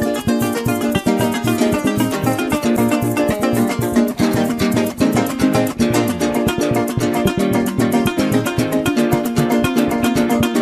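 Instrumental break of Venezuelan-Colombian llanera music, without singing: fast, steady strummed and plucked strings in the style of a llanero cuatro and string band.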